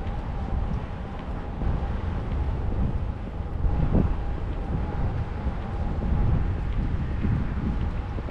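Wind buffeting the microphone outdoors, a fluctuating low rumble, with a faint steady hum running under it. There is a brief louder knock about four seconds in.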